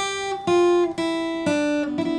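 Acoustic guitar picking single notes, about two a second, in a line that steps down in pitch. These are the main melody notes of a bluesy riff over a G chord, played on the thinnest strings.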